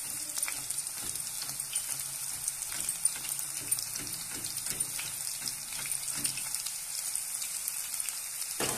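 Hot oil in a kadhai sizzling and crackling steadily as thin slices of raw banana are shaved straight into it off a steel grater's slicing blade, with faint repeated strokes of the banana across the blade.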